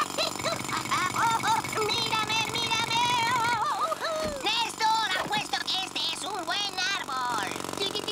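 Cartoon soundtrack: a fast, even jackhammer rattle for about the first three and a half seconds under a warbling, trilling laugh and music. About four seconds in there is a sound effect that falls in pitch, then more trilling laughter and music.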